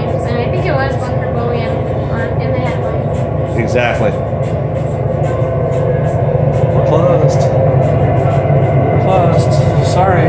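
A steady, low mechanical hum runs throughout, growing slightly louder about halfway through.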